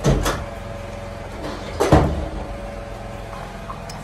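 Two knocks about two seconds apart, a door being shut and handled.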